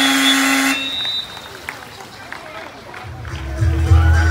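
Pool-side game horn sounding one long, steady, buzzy blast that cuts off under a second in, signalling the end of the water polo quarter. A low rumble follows near the end.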